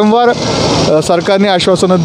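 A man speaking into a handheld microphone, with a steady hiss of street noise behind his voice.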